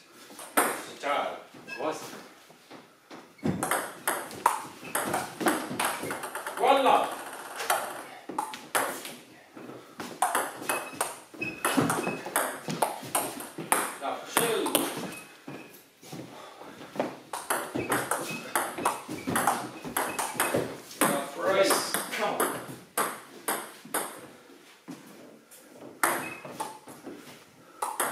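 Table tennis rallies: the plastic ball clicking back and forth off rubber bats and the Cornilleau table in quick runs, with short pauses between points.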